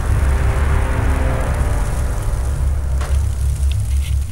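Wind in a snowstorm buffeting the microphone: a steady rushing hiss over a heavy low rumble.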